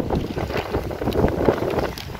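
Wind buffeting the microphone: an uneven low rumble that eases off a little toward the end.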